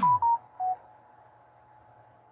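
Three short electronic beeps within the first second, the last one lower in pitch, followed by a faint steady hum.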